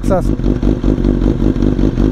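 BMW S1000RR's inline-four engine idling steadily, with a rapid even pulse. A voice is heard briefly at the start.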